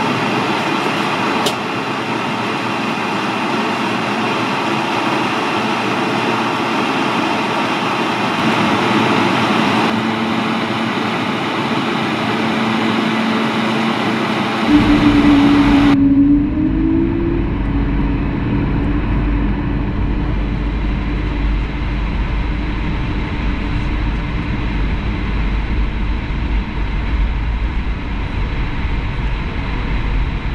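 Airbus A220-100's Pratt & Whitney geared turbofan engines running at taxi power, heard from inside the cabin as the jet taxis and lines up on the runway: a steady rumble and hiss. About halfway through the sound turns deeper and duller, with a low hum that rises briefly.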